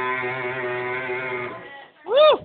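Electric guitar chord from a live band ringing out at the end of a song, held steadily with no new strums, then fading away over the last half-second.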